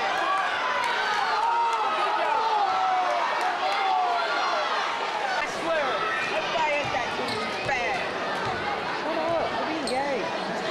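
Crowd of spectators talking and calling out in a school gymnasium, with many voices overlapping, and a basketball bounced on the hardwood floor at the free-throw line.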